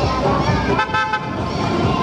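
A short, high-pitched vehicle horn toot lasting about half a second, about a second in, over the chatter of voices.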